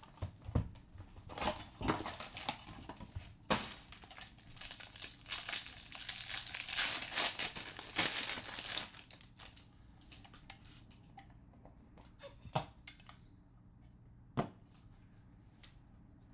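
Foil trading-card pack wrapper being torn open and crumpled, with loud crinkling for about the first nine seconds. After that it goes quieter, with a couple of short clicks as the cards are handled.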